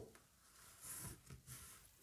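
Near silence, with two faint, brief soft scrapes of a silicone spatula spreading melted chocolate in a metal baking tin, about a second in and just after.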